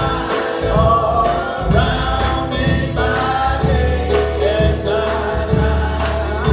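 A choir sings gospel music over a steady beat of about two strokes a second.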